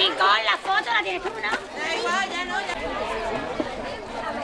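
Crowd of adults and children chattering, many voices overlapping at once.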